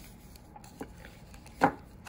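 Silver bullion bar and plastic coin capsules handled on a table: a faint click about a second in, then one sharp knock a little past halfway as a hard object is set down.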